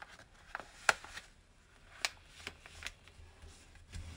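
Sheet of origami paper being folded and creased by hand: a few sharp crackles and snaps of the paper, the loudest about a second in.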